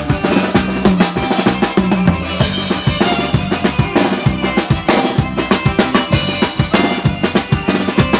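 Live band dance music, loud, with a drum kit's kick and snare keeping a fast, steady beat over sustained keyboard and bass tones.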